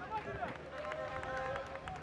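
Footballers shouting and calling out to each other on the pitch, with some calls held out.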